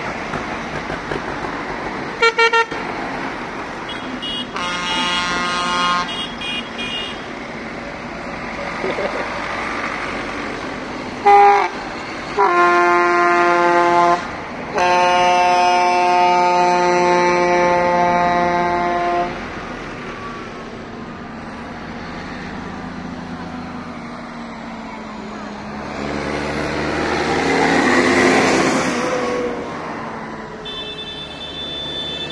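Tractor horns honking: a few short toots in the first seconds, then long steady blasts from about 11 to 19 seconds in, the longest held about four seconds. Tractor engines run underneath, and near the end one grows louder as it passes close by.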